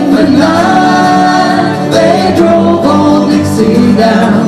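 Live acoustic folk-country band playing, with several voices singing together in harmony over strummed acoustic guitars.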